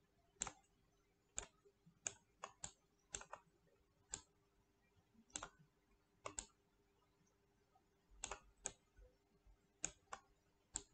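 Sharp clicks of a computer mouse and keyboard at irregular intervals, several in quick pairs like double-clicks, over a faint steady hum.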